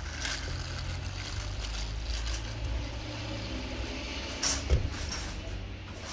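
Street ambience: a steady low rumble of road traffic, with a single sharp knock about four and a half seconds in.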